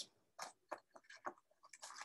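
Near silence with a few faint, short clicks spread through it.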